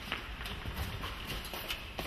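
Footsteps on a hard floor: a few faint, irregular clicks of shoes over a steady low background hum.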